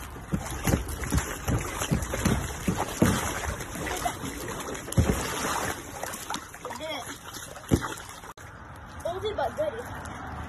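Pool water sloshing and splashing around an inflatable Airtrack Factory mat floating on it, with irregular soft thumps on the mat and faint voices in the background.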